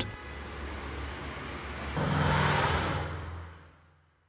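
Distant city traffic noise: a steady low rumble that swells about halfway through and then fades out near the end.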